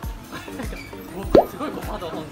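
Background music with a steady beat, about three beats a second, and a short, loud rising blip about 1.3 seconds in.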